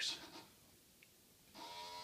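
A truck windshield-washer pump, run on 5 volts as a watering pump, switches on about one and a half seconds in and runs with a steady electric hum as it pumps water up to the plants.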